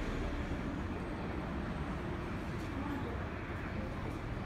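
Steady background noise of a station concourse open to a busy street: low traffic rumble with faint voices.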